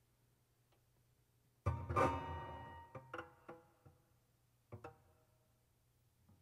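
Solo piano, sparse and atonal: after a pause of about a second and a half, a loud chord is struck and left to ring away, followed by a few short separate notes around three seconds in and a pair of notes near five seconds.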